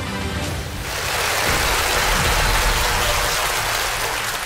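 Game-show music with held tones, joined about a second in by a steady wash of studio audience applause that runs to the end.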